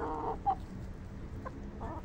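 Hens clucking. A throaty clucking call trails off at the start, a short high-pitched note comes about half a second in, and a few more clucks follow near the end.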